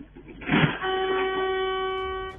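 A brief noisy thump, then a car horn sounding one steady note for about a second and a half.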